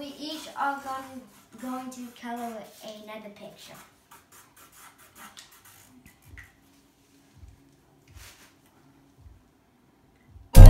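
A child's voice speaking briefly at the start, then faint scattered taps and scratches of markers on paper, with a couple of soft low thumps near the end.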